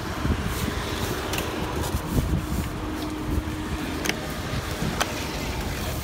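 Street background noise: a steady low rumble of traffic and running engines, with a faint held hum through the middle and a few small clicks.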